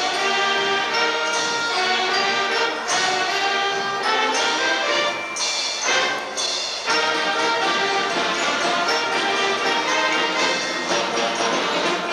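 A Philadelphia Mummers string band playing a lively tune, with saxophones, banjos and accordions together. The music runs steadily and thins briefly twice near the middle.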